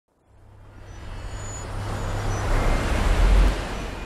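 A swelling whoosh sound effect over a low rumble, rising from silence to a peak about three and a half seconds in, then easing off: the build-up of an animated logo intro.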